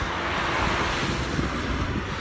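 Wind noise on the microphone of a cyclist riding along a paved road: a steady rushing hiss over a low rumble.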